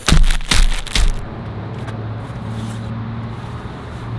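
Plastic candy packets crinkling as a handful of them is shaken, a few quick rustles in the first second; after that only a steady low hum.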